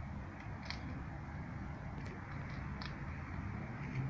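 Steady outdoor background rumble by a wide river, with a few faint, short high chirps scattered through it.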